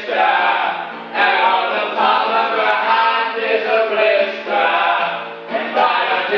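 A group of men singing loudly together to a strummed acoustic guitar, a rowdy chant-like sing-along, with short breaks between lines about a second in and again near the end.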